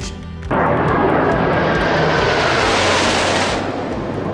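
Jet noise from a formation of Blue Angels F/A-18 Hornets flying past overhead, starting suddenly about half a second in, with a faint falling whine as they go by, over background guitar music.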